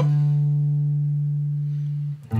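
Electric guitar ringing a sustained D note. The fifth-fret D on the A string and the open D string are struck together as an ear-tuning check, the two pitches sounding as one. The note holds steadily and slowly fades.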